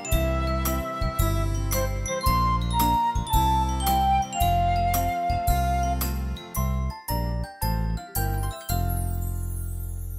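Instrumental ending of a simple children's hymn played on a Yamaha PSR-S970 arranger keyboard: a bell-like melody over repeated bass notes. The melody breaks into short separate notes and then settles on a held final chord that slowly dies away.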